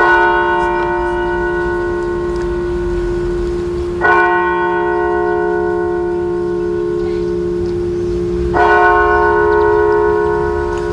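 A single deep bell tolling slowly for a minute of silence: three strikes about four seconds apart, each ringing on into the next.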